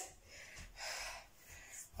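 A person breathing out hard after exertion: one breath about half a second in and a fainter one near the end.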